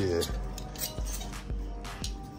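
Clear plastic clothes hangers clicking and clinking against a metal rack rail as shirts are pushed along it, several sharp clicks, over background music.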